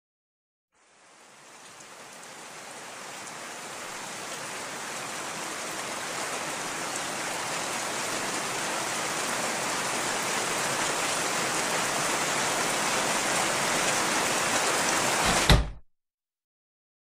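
Steady rain hiss that fades in from silence and grows gradually louder, ending in a low thump and an abrupt cut-off just before the end.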